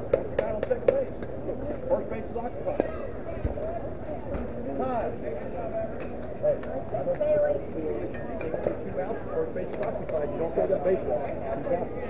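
Overlapping, indistinct chatter and calls from many voices of players and onlookers, with a few sharp clicks or knocks.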